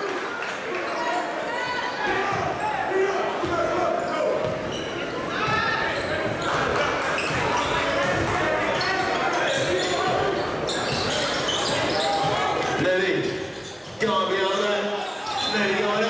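Live game sound in a crowded gym: a basketball being dribbled on the hardwood court, with sneakers and knocks, under a steady hubbub of many crowd voices, all echoing in the hall. The sound drops briefly near the end and then comes back suddenly.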